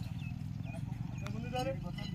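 Men calling out and shouting to a pair of yoked bulls as they drag a heavy load over dirt, with one drawn-out call near the end. A steady low rumble runs underneath.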